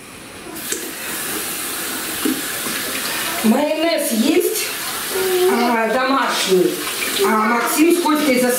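Water running from a kitchen tap into a sink, starting about half a second in, as a frying pan is rinsed under the stream.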